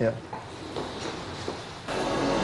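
A short spoken syllable, then a quiet studio with a few faint knocks, before background music starts suddenly near the end.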